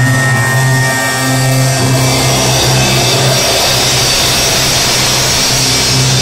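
Rock music with a drum kit: a held low note under a loud, steady wash of cymbals that thickens through the second half.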